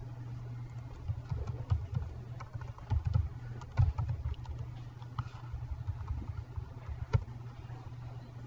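Computer keyboard typing: irregular runs of keystrokes, with a sharper keystroke near the end, over a steady low hum.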